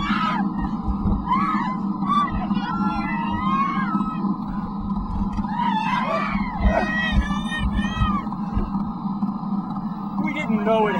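Several voices screaming in short rising-and-falling cries over a steady low hum, from a film soundtrack.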